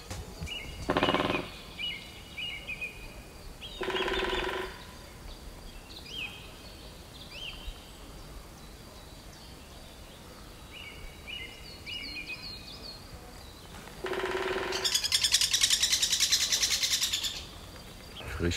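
Forest songbirds singing and calling: scattered short chirps, two louder calls about one and four seconds in, and a loud, rapid trilling song lasting about three seconds near the end.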